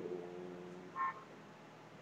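Quiet room tone with one short, high electronic beep about a second in.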